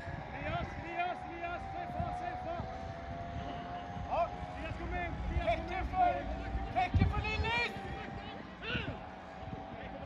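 Football players' distant shouts carrying across an outdoor pitch during play, over a low rumble, with a single sharp thud about seven seconds in.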